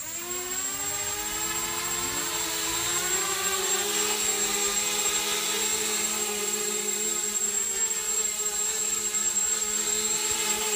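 Homemade 250-class quadcopter's four DYS 1806 2300KV brushless motors spinning up after arming, the whine rising in pitch over the first few seconds as the throttle comes up, then holding with small wavering shifts as it lifts off and hovers low. A steady high whistle sits over the motor sound, and the propellers are chipped along their leading edges.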